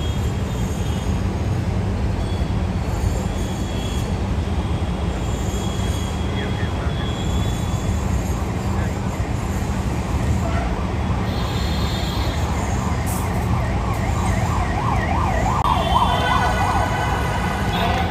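Steady city street noise with a heavy low rumble. In the second half a warbling tone comes and goes over it.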